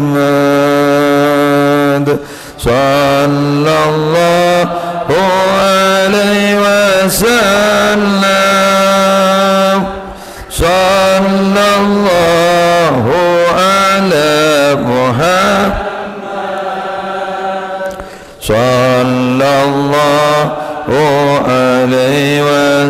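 Shalawat, Arabic blessings on the Prophet Muhammad, chanted in long, drawn-out melodic phrases that bend and waver on held notes. The chanting breaks briefly between phrases, about two, ten and eighteen seconds in.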